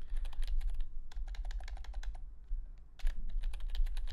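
Typing on a computer keyboard: a quick run of keystroke clicks with a brief pause about two and a half seconds in.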